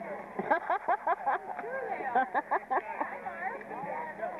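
Several overlapping voices, children's among them, talking and calling out over one another, with a few sharper shouts about half a second to a second and a half in.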